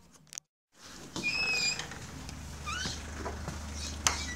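After a brief silence, outdoor ambience: a steady low rumble with birds calling, one held whistled note followed by a few quick rising chirps.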